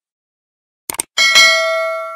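Subscribe-button sound effect: a quick double mouse click about a second in, followed by a bright notification-bell ding that rings and slowly fades.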